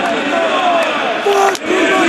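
Men's voices shouting and chanting a mock haka-style war chant, several voices overlapping.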